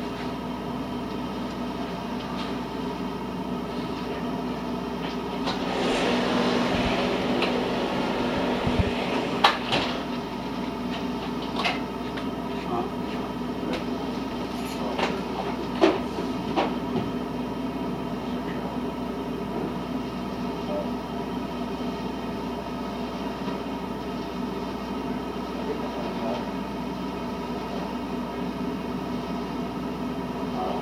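Truck-mounted Tarrant leaf vacuum unit running steadily as it sucks up and shreds a pile of leaves, a drone with several fixed pitches, heard muffled through window glass. It grows louder for a few seconds around the middle, with a few sharp knocks.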